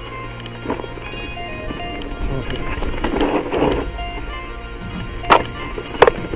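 Background music over the rolling and rattling of a YT Capra enduro mountain bike descending a rough dirt trail, with a sharp knock from the bike about five seconds in.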